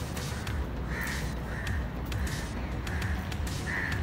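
A crow cawing five times in a steady series, the calls a little over half a second apart. Background music runs underneath.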